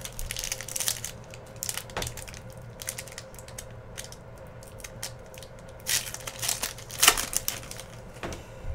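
Foil trading-card pack wrapper crinkling and tearing as it is handled and opened, in bursts about half a second in and again, louder, near the end.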